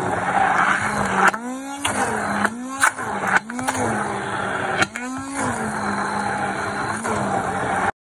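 Electric immersion (stick) blender running in a thick, whipped body-butter mixture. It hums steadily, and its pitch swings up and back down about four times as the load on the blade changes while it is worked through the dense mix.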